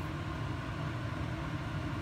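A steady low hum and rumble of background noise, even throughout with no distinct events.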